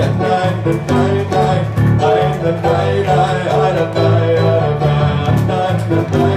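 A man singing live to his own accompaniment on a Yamaha CP40 Stage digital piano, with steadily repeated chords.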